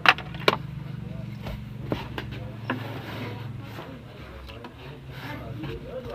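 Sharp plastic clicks and rubbing as hands handle a car's under-dash fuse box: two loud clicks just after the start, then several lighter taps over the next few seconds.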